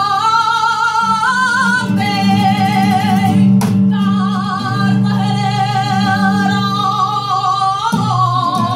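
Female flamenco singer singing a cartagenera, holding long, wavering, ornamented notes over an acoustic flamenco guitar accompaniment. Her voice breaks off briefly a little past the middle, then carries on.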